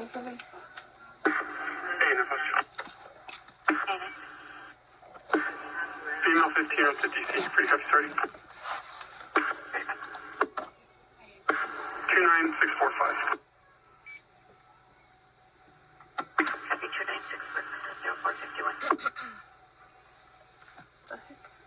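Police two-way radio traffic in a patrol car: about six short, tinny voice transmissions, each cutting in and out abruptly, with quiet gaps between them.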